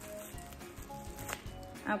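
Faint background music, with light handling noise and a single sharp click as a small eyeshadow compact is taken out of its packaging.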